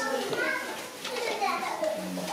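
Quiet background chatter of several people talking, including a higher, child-like voice.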